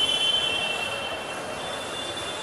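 A steady high-pitched squeal made of several close tones together. It comes in sharply at the start, is loudest for about a second and a half, then carries on more faintly, over a constant background hubbub.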